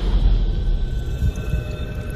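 Intro soundtrack for a countdown animation: a deep rumbling drone with thin, steady high tones held above it.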